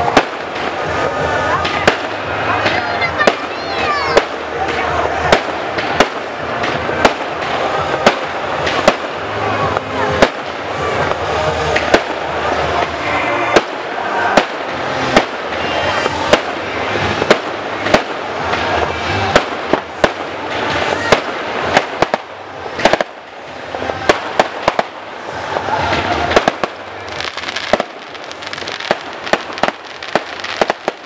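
Aerial fireworks bursting in a rapid, irregular string of sharp bangs throughout.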